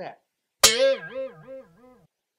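A sudden plucked guitar note whose pitch wobbles up and down about four times a second as it fades out.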